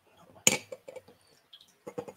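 Whisky poured from a glass bottle into a metal jigger: a sharp clink about half a second in, then a few faint ticks.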